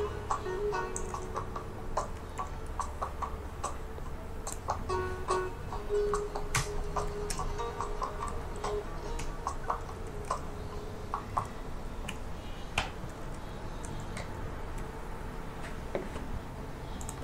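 Irregular clicking of a computer mouse and keyboard while text is typed and placed, over faint background music.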